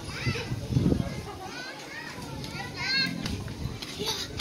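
Children's high-pitched voices, calling and chattering while playing, with no clear words.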